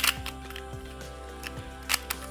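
Sharp plastic clicks of a novelty Pyraminx being turned quickly, a loud one right at the start and another near the end, with fainter clicks between, over background music with a steady beat.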